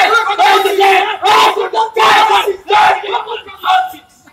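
Several men shouting loudly in quick repeated outbursts during a staged fight, overlapping one another. The shouts thin out and stop near the end.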